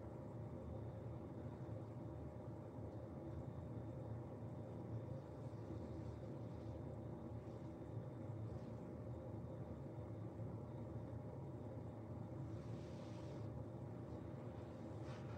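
Quiet indoor room tone: a steady low hum throughout, with a few faint soft rustles or breaths about five, eight and thirteen seconds in.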